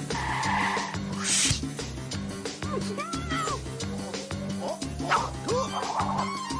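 Cartoon background music with a steady beat, overlaid with sound effects: a rushing noise in about the first second and a half, short sliding squeaky calls around the middle, and a sharp hit near the end.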